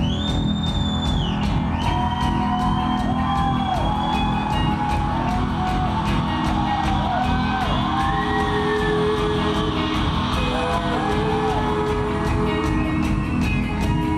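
Live rock band playing: drums keeping a steady beat, bass and electric guitars, with a lead vocal over them. A long high note is held near the start.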